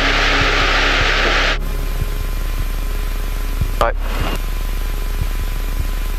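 Light aircraft engine, the Aquila AT01's Rotax four-cylinder, idling low in the cabin as the plane taxis off the runway after landing. A loud hiss runs over it and cuts off suddenly about one and a half seconds in.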